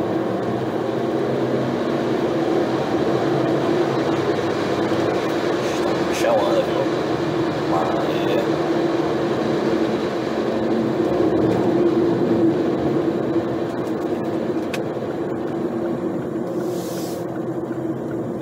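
Car engine running steadily under way, heard from inside the cabin as a constant hum over road and tyre noise, a little louder about ten seconds in. A brief hiss near the end.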